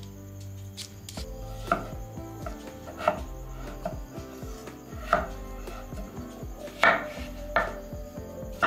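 Kitchen knife chopping peeled raw potatoes into chunks, each cut ending in a sharp knock on a wooden cutting board: about five distinct chops a second or two apart, starting a couple of seconds in.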